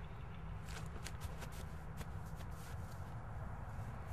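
Quick running footfalls on grass from a sprint start, short sharp strikes several a second beginning just under a second in, over a steady low outdoor rumble.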